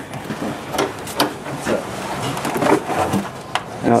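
Car deck lid being unlatched and lifted open by hand: a series of light clicks and knocks from the latch and metal lid, with soft handling noise.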